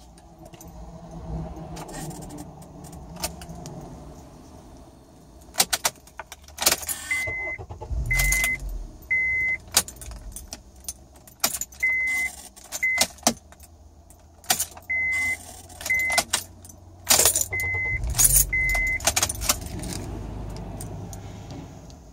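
Ignition key of a 2008 Honda Accord four-cylinder being turned toward start, bringing irregular bursts of a bizarre buzzing, clicking sound along with jangling keys and groups of short high beeps, with a brief low rumble twice. The buzz comes before the engine will start; the owner suspects the ignition switch, a relay, a fuse, the starter or the battery.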